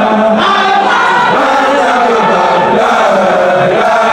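A large crowd of men chanting a Sufi zikr together, many voices moving in pitch as one, loud and continuous.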